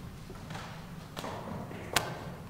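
Two sharp taps, a faint one just past a second in and a louder one near the end, over a low steady room hum.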